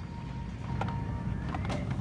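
Plastic blister-packed toy cars clicking and rustling against each other as a hand flips through them on a shelf peg, a few sharp clicks over a steady low hum.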